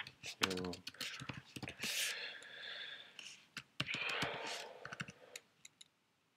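Typing on a computer keyboard: irregular runs of key clicks.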